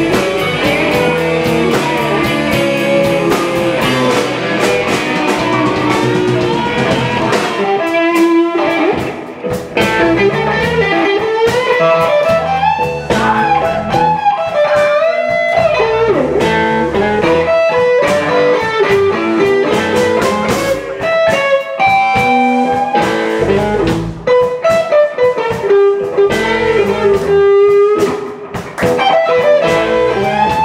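Live blues band playing electric guitar, bass and drums, with a harmonica in the dense opening seconds. From about eight seconds in, an electric guitar leads with single-note lines whose notes slide up and down in pitch.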